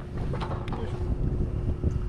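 Wind buffeting the microphone in a steady low rumble, with a couple of light clicks in the first second.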